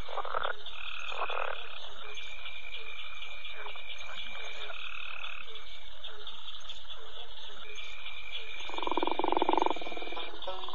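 Bayou night ambience of frogs croaking over a steady, high chirring of insects, with one louder, deeper croak near the end.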